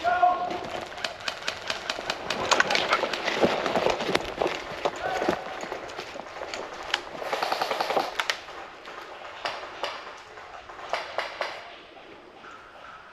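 A voice calls out at the start, then irregular sharp cracks of airsoft gunfire mixed with footsteps crunching on dry twigs and needles as players run through the forest; the sounds thin out near the end.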